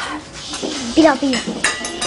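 Clatter of stainless-steel serving dishes and cutlery being handled as a meal is served, with a sharp metallic clink that rings on briefly near the end. A short voice sounds about a second in.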